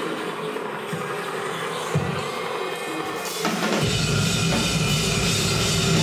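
Rock band's drum kit playing over a thin backing, then the full band with bass and distorted guitars comes in about three and a half seconds in, and the music gets fuller and louder.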